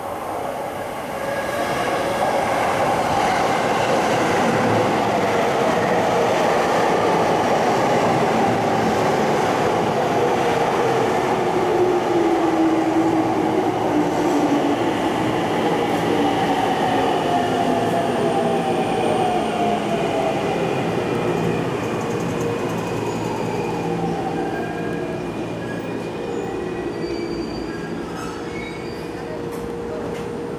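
JR East E231-500 series Yamanote Line electric train pulling into the platform and braking to a stop. Wheels roll on the rails while the inverter and traction-motor whine falls steadily in pitch as the train slows, and everything fades as it comes to rest near the end.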